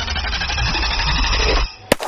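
Background music with a heavy bass cuts off suddenly. Near the end a single pistol shot rings out, with a ringing tail.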